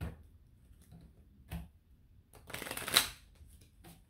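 A deck of tarot cards being shuffled by hand: a soft tap near the start and another about a second and a half in, then a rasp of cards sliding together that lasts under a second, around three seconds in.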